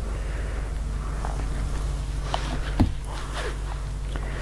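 Quiet handling sounds of a fabric strip being drawn through a plastic bias-folding ruler and pressed with a mini iron on an ironing board: light rustles and clicks, with a soft knock about three-quarters of the way in, over a steady low hum.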